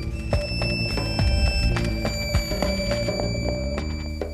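Live ensemble playing a Baroque piece reworked for violin, electric guitar, electric bass, drums and electronics. Steady low bass and scattered drum strikes run under long, steady high tones.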